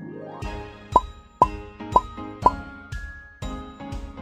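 Upbeat children's music with a steady beat, over which four quick cartoon pop sound effects, each a short upward blip, come about half a second apart in the first half.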